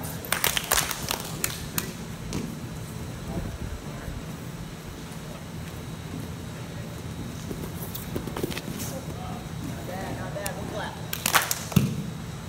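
Wrestlers drilling takedowns on a mat: a cluster of sharp smacks in the first two seconds and another just before the end, over a steady low hum with faint voices.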